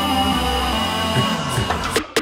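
Background electronic music: held synth chords over a low bass line, with no vocals.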